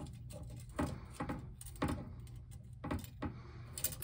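Light, scattered clicks and taps of thin painted metal wind-spinner strips and hardware being handled and fitted together, about five in all, over a steady low hum.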